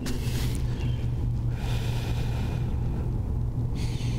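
A man breathing slowly and audibly: a short breath at the start and a long breath from about one and a half seconds in until near the end, over a steady low hum.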